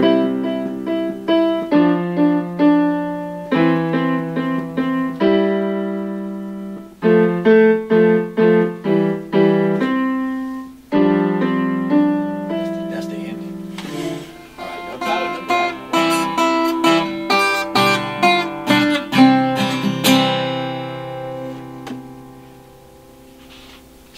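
Electronic keyboard on a piano sound, playing a simple tune over low held notes, each note struck and fading. About 14 seconds in the playing turns busier, with quicker notes, then fades out near the end.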